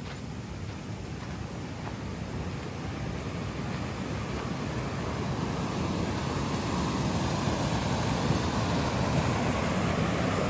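Rushing water of a mountain waterfall, a steady noise that grows steadily louder.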